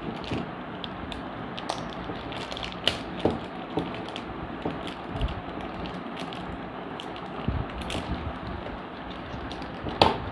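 Clear plastic zip-lock bag crinkling and crackling as it is handled and pulled open, with irregular sharp clicks over a steady background hiss.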